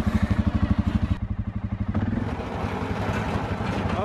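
Four-wheeler (ATV) engine running with a fast, even pulsing beat. About two seconds in the note picks up and turns smoother as the machine pulls away under throttle.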